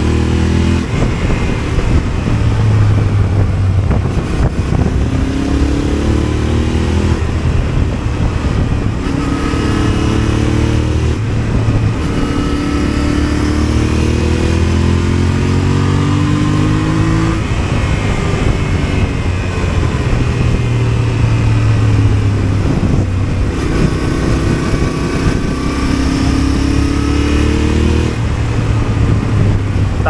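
Yamaha motorcycle engine under way, heard from the rider's seat: its note climbs in pitch again and again as the throttle opens, dropping back between climbs.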